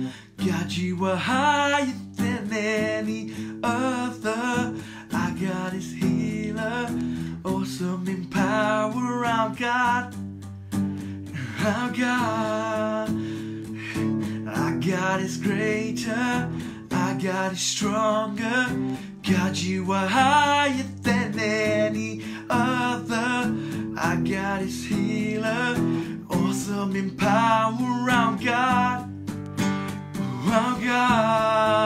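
Acoustic guitar strummed in steady chords, with a voice singing over it in phrases.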